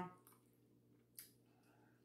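Near silence with a single faint click about a second in.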